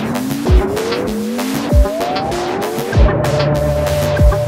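Minimal electronic instrumental played on a Minimoog Voyager analog synthesizer: a series of short rising, gliding synth notes, then a held steady note from about three seconds in, over three low kick-drum thumps about a second and a quarter apart.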